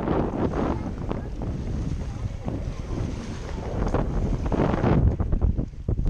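Wind buffeting an action camera's microphone in uneven gusts, getting louder near the end, with small waves washing against a stone breakwater.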